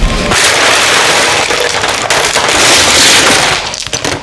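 Ice cubes tumbling and rattling into a disposable aluminium foil pan around a whole boiled chicken, right beside a microphone clipped to the pan. It makes a loud, continuous crackling clatter for about three seconds and stops shortly before the end.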